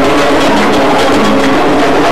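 A band playing live, plucked strings and percussion together, with a quick, even rhythm.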